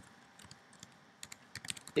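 Typing on a computer keyboard: a few scattered keystrokes, then a quick run of key clicks in the second half as a word is typed.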